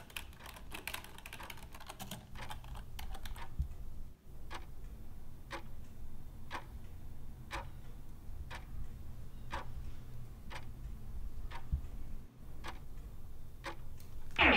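Fast typing on a Logitech K120 computer keyboard for about the first four seconds, then a clock ticking about once a second.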